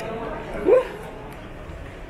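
A single short yelp that rises in pitch, a little over half a second in, over faint background voices.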